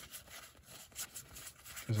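Faint rustle of a stack of Pokémon trading cards being slid and fanned out between the hands, with a few light clicks of card edges.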